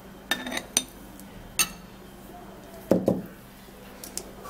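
A container knocking and clinking against a drinking glass as thick yogurt is tipped into it: a few short clinks in the first two seconds, then a duller knock about three seconds in.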